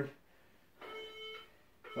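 Electronic timer beeps, each about half a second long and about a second apart: a countdown signalling the end of a 30-second exercise interval.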